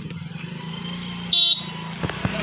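An engine running steadily at a low pitch, with one short, loud, high-pitched toot about one and a half seconds in.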